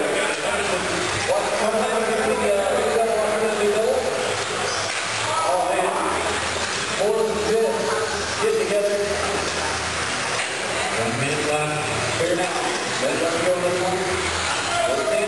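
An indistinct, echoing voice over the steady whir and clatter of electric 1/10-scale RC buggies racing on a clay track.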